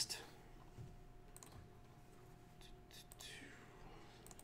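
Near-silent room tone with a faint steady hum and a few soft clicks from computer mouse and keyboard use, about a second and a half in and again near three seconds in.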